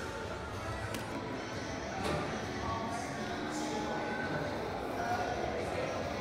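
Indoor hall ambience: background music plays under indistinct voices over a steady din.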